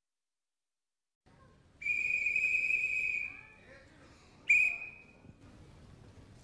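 A whistle blown twice: one steady, high-pitched blast of about a second and a half starting about two seconds in, then a shorter, sharp blast about a second later.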